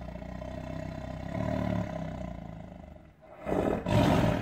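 Big cat growl and roar sound effect: a low rumbling growl swells and fades, breaks off briefly, then a loud roar starts near the end.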